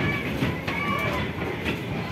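Small spinning cup ride running: a steady rolling rumble with scattered clicks and clatter from its turning mechanism.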